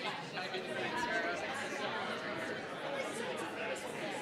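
Many people talking at once in a large hall: steady, overlapping audience chatter with no single voice standing out.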